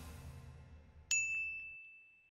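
The last of the outro music fading away, then about a second in a single bright, bell-like ding sound effect that rings on one clear high note for about a second.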